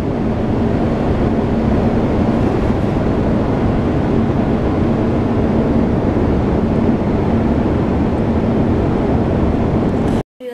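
Steady road and engine noise inside a moving car's cabin, with a faint steady hum.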